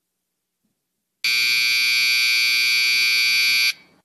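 A loud, steady electric buzzer sounds for about two and a half seconds, starting about a second in and cutting off sharply: the signal that ends a minute of silence.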